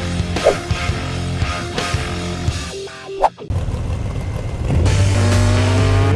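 Title music with a steady beat, broken by a short rising whoosh about three seconds in. It is followed by a steady low engine drone from an off-road race vehicle, which grows louder about a second before the end.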